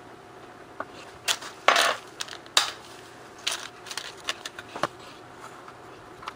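Small metal picture hangers being handled and set down on a wooden panel: a series of light clicks and clinks, with a short clatter about two seconds in as the loudest.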